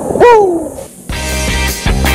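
A man's short, loud 'ooh' that falls in pitch. About a second in, rock music with guitar starts.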